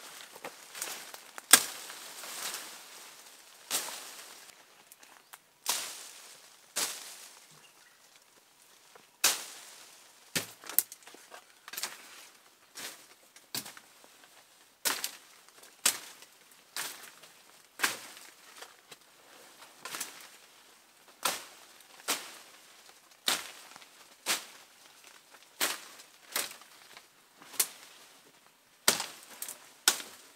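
Twigs and small branches snapping as they are pulled and broken by hand in dense undergrowth: a long series of sharp cracks, irregular at first and then about one a second, with rustling of leaves in between.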